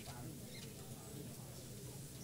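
Faint room tone of a meeting hall: a steady low hum with a few light clicks and small squeaks.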